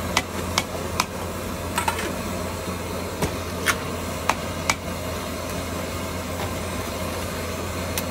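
Steel utensils clinking and tapping: about nine sharp, short metallic clicks at irregular intervals over a steady low hum.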